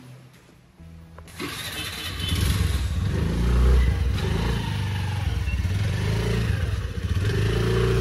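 Honda Dio scooter's small single-cylinder engine starting about a second and a half in, then running steadily at idle.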